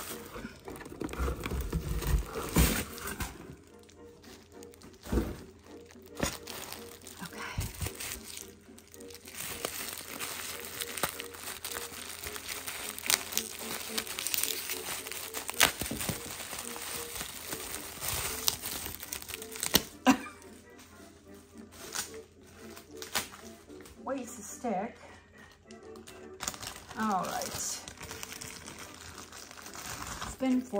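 Plastic bubble wrap crinkling and rustling as it is handled and pulled out of a cardboard box, with a few sharp crackles.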